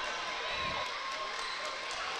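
Gymnasium crowd at a high school basketball game during a timeout: a steady noise of many voices, with no single voice standing out.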